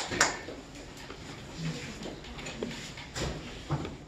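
The last claps of applause die away, then a quiet room with a couple of light knocks near the end: a hand-held steering-wheel prop and other things being handled and set down on a desk.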